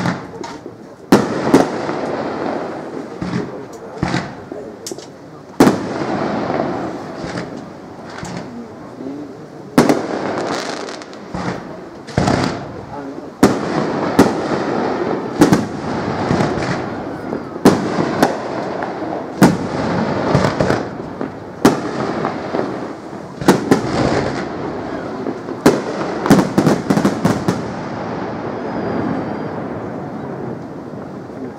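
Aerial firework shells bursting in a display, a sharp bang every second or two, with a quick run of reports about 26 seconds in.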